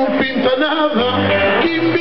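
Acoustic guitar strumming a folk accompaniment for Portuguese cantar ao desafio, with a man singing over it.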